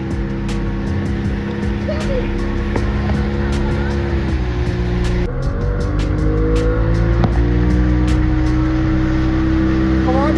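Outboard motor of a small speedboat running steadily under load while towing, with the rush of wind and water; its pitch sags briefly about four to five seconds in, then climbs back up.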